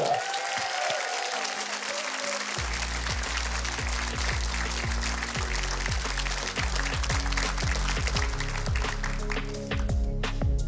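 Studio audience applauding over walk-on music. A heavy bass beat comes in about two and a half seconds in.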